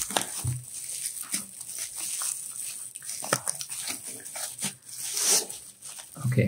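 Plastic bubble wrap crinkling and crackling in irregular snaps as hands pull it open and peel it off a hard sunglasses case.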